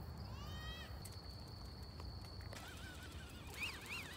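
A steady high-pitched insect trill that stops about two and a half seconds in, with a few faint high animal calls rising and falling in pitch over it.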